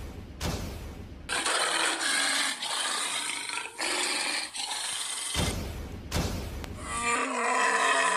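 Snarling growl of a big cat, a dubbed sound effect. It comes as several rough, noisy snarls, then a pitched growl that falls in pitch near the end. Short sharp bursts come at the start and about five and a half seconds in.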